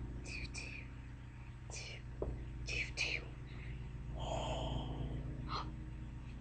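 A person whispering faintly, in short hissy breaths with no clear words, including a longer breathy whisper about four seconds in. A steady low hum runs underneath.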